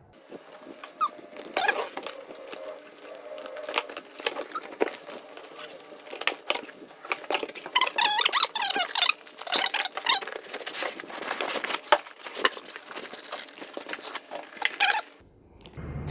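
A large cardboard box being opened and unpacked: the flaps scrape and rustle, with irregular knocks and clicks, and the packing material squeaks and rubs, most often in the middle stretch.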